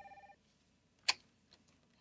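Electronic office desk phone ringing with a pulsed, trilling tone that stops shortly after the start, then a single sharp click about a second in as the handset is picked up.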